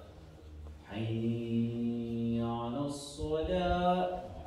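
A man's voice chanting the adhan, the Islamic call to prayer, into a microphone in long melismatic phrases. A single held note starts about a second in and shifts pitch near its end, then after a short break another long note begins near the end.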